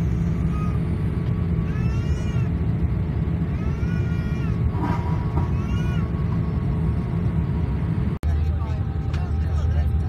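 Steady low roar of a Boeing 787 Dreamliner's cabin in flight, with a high-pitched voice rising and falling in short calls several times over it in the first half. Near the end the hum drops out for an instant and comes back at a slightly different, lower pitch.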